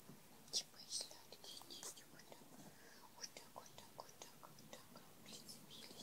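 Faint scratchy rustling and light clicks of kittens' claws and paws on a fabric quilt as they play, in short irregular bursts.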